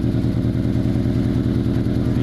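A combustion engine running steadily nearby, a low even hum with a fast regular pulse.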